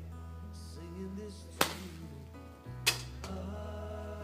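A song playing with two sharp smacks about a second and a quarter apart, one of them a golf club striking a ball off a practice mat.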